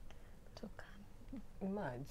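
Quiet whispered speech, then one clearer spoken word near the end.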